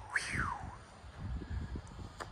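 Faint low rumbling, like wind on the microphone, with one short falling whistled note near the start; the rocket's motor has already burnt out and is no longer heard.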